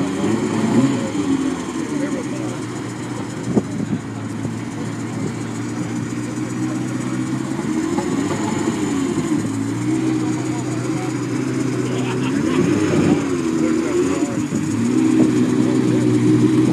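Ferrari F50's V12 engine idling, its pitch rising and falling a couple of times with light throttle, then getting louder near the end as the car moves off.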